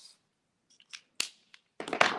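A few light clicks and one sharp click from handling a Copic alcohol marker on the desk, followed near the end by a sheet of marker paper sliding across the tabletop.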